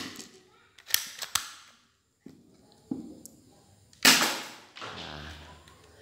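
Spring-powered Glock 26 airsoft pistol, a water-gel blaster converted to 6 mm BBs. A few sharp clicks about a second in come as the slide is worked, then one sharp shot about four seconds in, the loudest sound. It fires on its stock, un-upgraded spring, which gives it little power.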